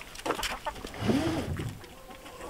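Chickens clucking, with a few sharp knocks in the first half-second and one louder call that rises and falls about a second in.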